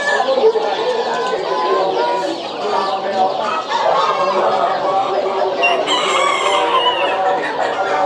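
Many chickens clucking and roosters crowing at once, a steady mass of overlapping calls, with one higher call standing out about six seconds in.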